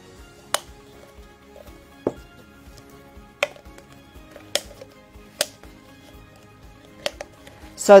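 Soft background music with about six sharp, irregular clicks and snaps as a rubber band is stretched and let go against a clear plastic cup.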